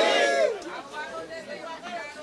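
Speech: a man's voice ends a phrase about half a second in, then faint chatter from the crowd.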